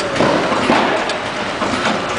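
Milk-powder sachet packing machine running, a steady mechanical clatter with occasional sharp clicks.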